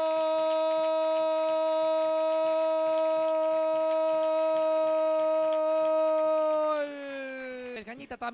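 A sports commentator's long, held shout of "gol" celebrating a goal: one loud sustained note that holds steady for nearly seven seconds, then drops in pitch and fades as his breath runs out near the end.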